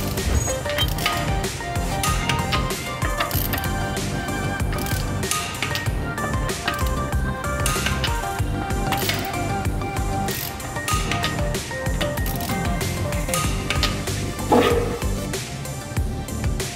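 Background music, over the clicking of a ratchet torque wrench with a 17 mm socket tightening the wheel bolts on a Mercedes-Benz W203 front wheel.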